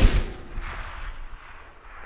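A Barrett M82A1 .50 BMG rifle shot, fired just before, opens loud at the start. Its boom then dies away in echoes off the surrounding hills over about two seconds, swelling again briefly about half a second in.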